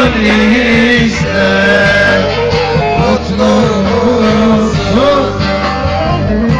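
Live Turkish folk music, loud and continuous: a man singing an ornamented melody to an amplified bağlama (long-necked saz), with steady accompaniment underneath.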